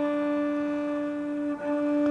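Cello sounding the natural octave harmonic on the D string, the D above middle C, bowed softly (pianissimo) at the tip of the bow as one steady, pure note. A brief break about one and a half seconds in, then the same note carries on.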